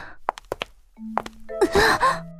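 A woman's breathy cry of pain near the end as she bumps into someone, over soft background music that comes in about a second in. A few short clicks come before it.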